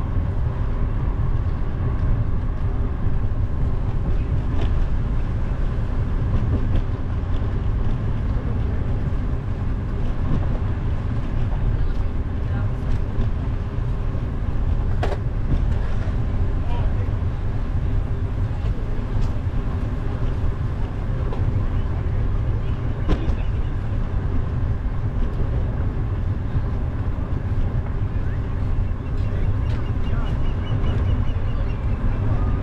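Steady low wind noise buffeting an action camera's microphone while cycling, with two sharp clicks, one about halfway through and one about three-quarters of the way through.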